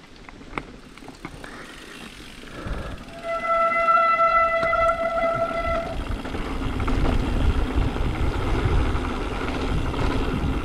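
Mountain bike rolling down a rocky dirt trail: light clicks and rattles from the tyres and bike over stones. About three seconds in, the noise jumps as wind rushes over the microphone at speed. A steady high-pitched whine with overtones sounds from the bike for nearly three seconds.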